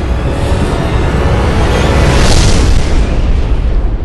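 Loud cinematic sound-effect stinger for an animated logo: a deep, sustained rumbling boom with a whoosh that swells to a peak about two seconds in.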